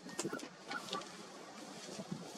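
Wild birds calling: a cluster of short, sharp calls in the first second, then only faint ambience.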